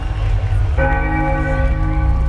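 A large church bell played through a concert sound system, struck once about a second in and ringing on with several steady overtones, over a constant low rumble.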